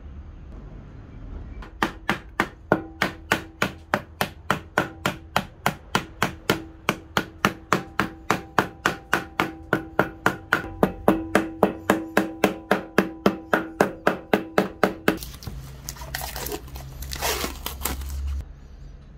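A small hammer rapidly tapping a sheet-metal plate blank on a wooden block: a long, steady run of about three and a half blows a second, the metal giving a faint ring under the blows. The tapping stops a few seconds before the end and gives way to a rustling of plastic film being handled.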